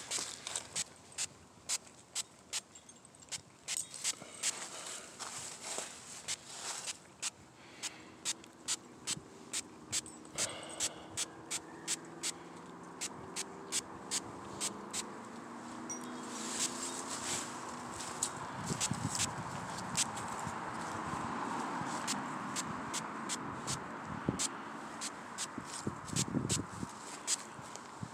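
Hand spray bottle spritzing rust activator onto a plastic RC car body: a long run of short, sharp sprays, about two a second.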